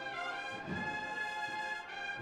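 Brass band playing a processional march, holding long sustained chords.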